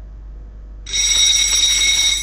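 A countdown timer's time-up alarm: a loud, bell-like ringing sound effect that starts about a second in and keeps ringing steadily, signalling that the time is up.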